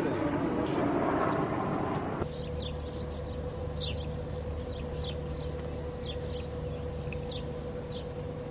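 A loud rushing noise that cuts off abruptly about two seconds in. After it, a steady hum with one held tone, and small birds chirping repeatedly with short, downward-sliding calls.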